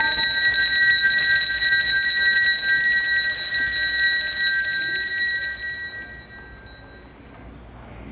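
Altar bells (Sanctus bells) shaken in a continuous bright ringing at the elevation of the chalice during the consecration, fading out about six seconds in.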